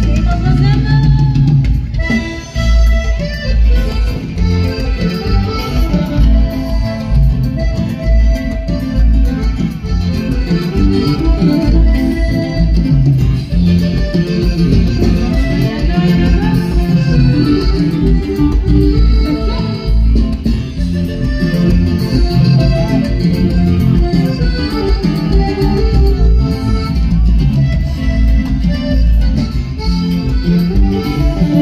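Live norteño band music played loud through a PA sound system: accordion over guitar, bass and a steady dance beat.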